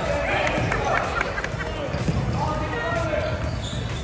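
A basketball bouncing on a hardwood gym floor, with a few sharp knocks, amid spectators' voices and shouts in the gym.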